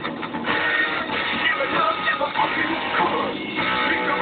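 A rock band playing live, with electric guitar prominent, heard loud from among the audience in a thin, low-quality recording.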